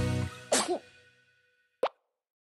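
A music cue fades out, followed by a short sob from a crying cartoon girl. Then comes a single plop sound effect with a brief ringing tone, a cartoon tear-drop.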